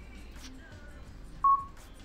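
A short, loud electronic beep, a single tone, about one and a half seconds in, over faint background music.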